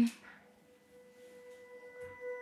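A faint, steady held musical note with a few thin overtones, entering softly as a background score cue begins.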